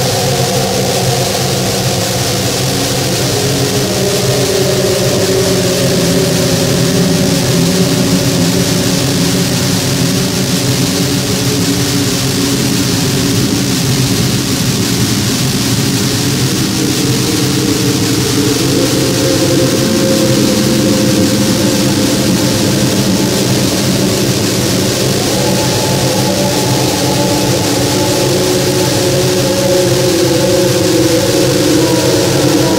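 A harsh, distorted noise drone from a grindcore record: several sustained, droning tones layered over a high hiss, sliding and stepping to new pitches every few seconds, with no drums or beat.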